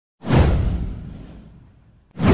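A swoosh sound effect for an animated intro graphic. It is one sweep that comes in sharply about a quarter second in, with a deep low rumble under a hiss that falls in pitch, and fades away over about a second and a half.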